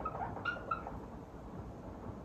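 Whiteboard marker squeaking against the board as a word is written, in a few short, high chirps within the first second.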